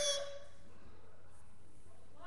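The end of a young voice calling "mommy", fading just after the start, then only the steady hiss and faint hum of a webcam microphone.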